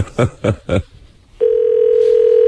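Telephone dial tone over the line: one steady, unwavering tone that comes in about a second and a half in.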